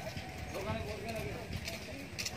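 Indistinct voices of people talking at a distance, with a few short sharp clicks, one near the end.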